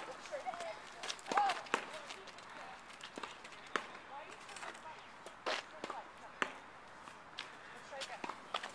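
Faint voices and a few sharp knocks and clatters as a child's small bicycle tips over onto the asphalt and is handled on the ground.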